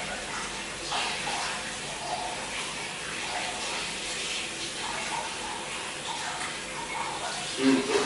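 Steady rushing noise that holds at one level, with faint voices in the background.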